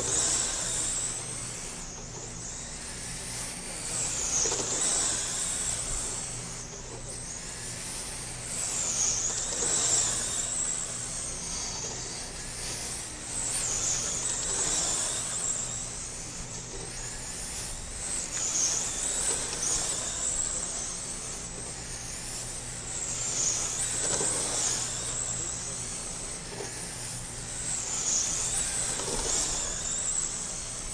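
Radio-controlled dirt oval late model cars running laps, a high motor whine that swells and dips as the cars pass, about every four to five seconds.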